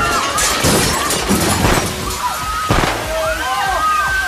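A bar counter collapsing: several crashes of breaking wood and glass, about half a second, one and a half and nearly three seconds in. Under them a spray of water hisses and people shout in alarm.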